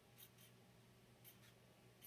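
Faint writing on paper: a few short scratching strokes, two near the start and two just past the middle, over near-silent room tone.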